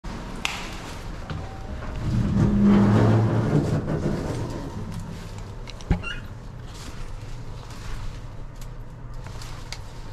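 Passenger elevator: a low rumble and hum, loudest between about two and four seconds, a sharp thump just before six seconds as the doors shut, then a steady low hum from the car.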